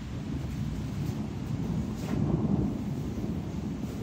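Rolling thunder rumbling low, swelling to its loudest about halfway through and then easing.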